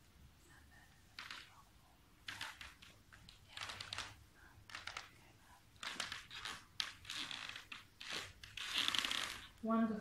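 Soft rustling and breathing from people stretching on yoga mats: a string of brief noisy sounds that grow louder toward the end, the longest just before a voice starts at the very end.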